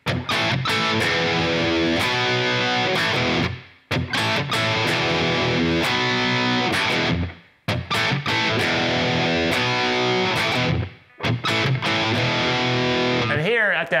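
Distorted electric guitar playing a power-chord riff: a B power chord, a quick open A power chord, then an E power chord. The phrase repeats four times, with a short stop between each, and the last E is left to ring out.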